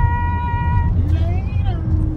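Steady low road rumble inside a moving car's cabin. Over it, a woman's voice holds one long high note for about a second, then slides through a second short vocal sound.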